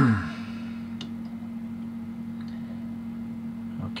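Steady low electrical hum of a small room, with a brief vocal sound at the start, a faint click about a second in, and a man clearing his throat at the end.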